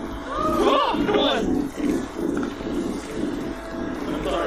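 A man exclaiming "oh my god" in a drawn-out voice that swoops up and down in pitch, about a second in, over quieter talk from a playing video.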